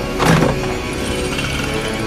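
Dark, suspenseful film-score music, with a sudden loud crash about a quarter of a second in.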